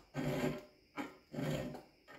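A hand file scraping across the teeth of a shop-made steel dovetail cutter held in a vise, three strokes of about half a second each. The file is worn out and isn't cutting well.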